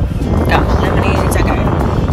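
A car moving off, heard inside the cabin as a steady low rumble, with music and faint voices over it.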